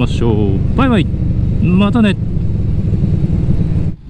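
Motorcycle riding on a road: a steady low rumble of engine and wind, with a few short spoken words over it in the first two seconds. It cuts off suddenly just before the end.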